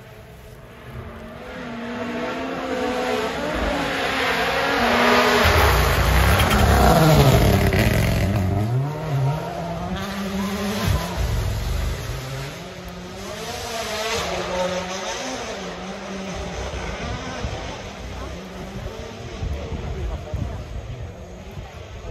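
Rally car passing at speed: the engine builds as it approaches, is loudest about seven seconds in with its pitch swinging up and down through gear changes and lifts, then fades into the distance while still revving.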